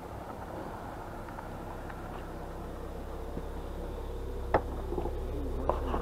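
A car's engine running as the car pulls up close, its low hum growing gradually louder, with a single sharp knock about four and a half seconds in.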